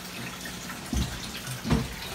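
Steady splashing of water pumped through a hose into a pond, running as a small waterfall.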